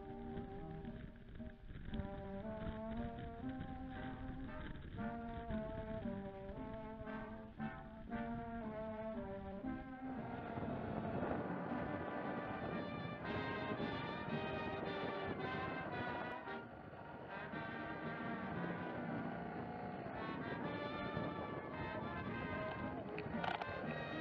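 Instrumental background music playing a melody, which changes about ten seconds in to a fuller, denser passage.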